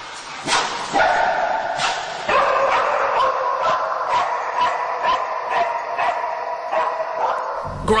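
An English springer spaniel cadaver dog barking in a string of short sharp barks, about one or two a second, with a high whine held between them. This is the dog's trained bark alert beside a car, signalling that it has picked up the odour of human decomposition.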